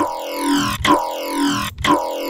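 Serum wavetable synth growl bass played as a repeated note, struck about once a second, through a resonant 24 dB high-pass filter with a little filter drive. An LFO modulates the filter, so a falling, vowel-like sweep runs through each note.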